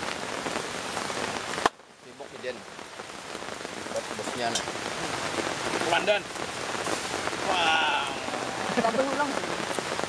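Steady hiss of water, rain or a stream, with faint voices in the background. About two seconds in, a sharp click is followed by a sudden drop in the hiss, which then builds back up.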